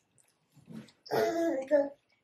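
A woman's short voiced sound, a grunt or hum made through a mouthful of pizza while chewing, starting about a second in and lasting under a second.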